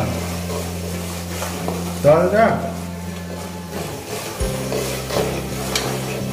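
Metal ladle stirring chillies, greens and spices frying in oil in an aluminium pot, with a light sizzle and a few short clicks of the ladle, over steady background music.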